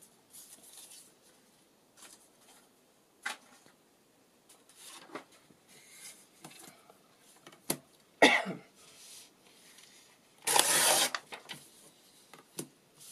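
Paper being handled on a tabletop: light rustles of scrapbook paper and a couple of sharp knocks as a tearing ruler is set down, then a short tearing noise near the end as a strip of paper is ripped.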